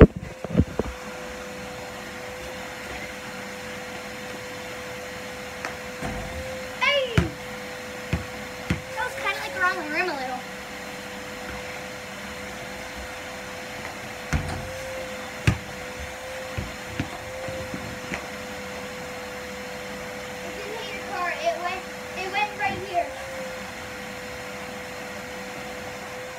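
A vacuum cleaner runs steadily, its whine holding one pitch with a slight waver, while a basketball thuds on the driveway several times. Short bursts of voice come a few times.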